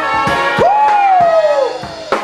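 A live brass band with drums playing. About half a second in, one horn note swoops up and then slides slowly down in pitch over about a second, over steady drum strokes.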